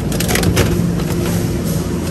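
A plastic clamshell container of cut fruit being handled, with a few sharp crackles and clicks in the first half-second or so, over a steady low hum.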